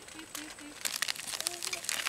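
Sweet wrappers crinkling in a quick run of crackles starting about a second in, over faint low voices.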